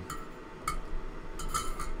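Small light metallic clinks and taps of tools being handled and set down on a workbench. There is one near the start, one about two-thirds of a second in, and a quick cluster of several near the end.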